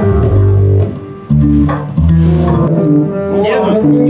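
Live band jam: double bass and electric bass guitar playing low notes together, with a short drop in volume about a second in before the playing picks up again.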